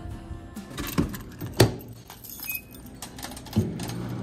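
Keys on a coiled wrist keychain jangling and clinking in irregular clicks, the sharpest about one and a half seconds in.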